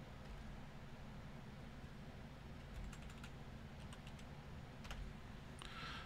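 Faint computer keyboard typing: a few scattered keystrokes, mostly in the second half, over a low steady room hum.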